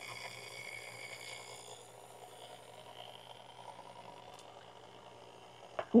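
Vintage Sunbeam Mixmaster stand mixer running quietly at its lowest speed, beating batter: a steady low hum with a faint high whine that fades over the first two seconds.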